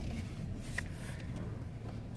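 Low, steady rumble inside a Chevrolet car's cabin as the car reverses slowly.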